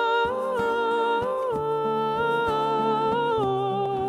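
A woman's voice singing long wordless held notes that step down in pitch, over an acoustic guitar being played.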